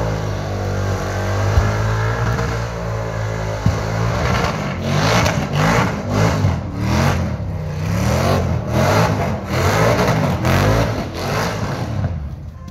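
LS1 V8 in a KE Corolla doing a burnout, rear tyres spinning: the engine is held at high revs for the first few seconds, then revved up and down over and over, about two rises a second.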